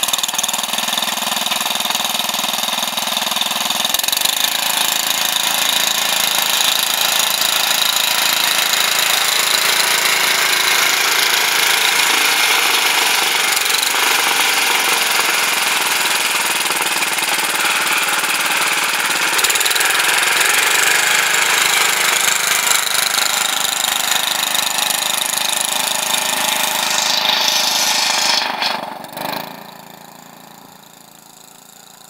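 Wheel Horse 701 garden tractor's single-cylinder engine running steadily under load as it pulls a plow through garden soil. The sound falls off sharply near the end.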